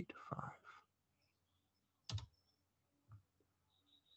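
Near silence with a stylus writing on a pen tablet: one sharp click about halfway through and a softer one about a second later.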